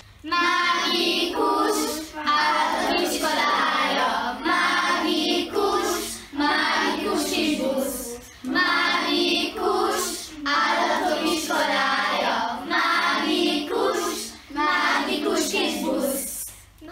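A group of children singing a song together, in phrases of about two seconds with short breaks between them.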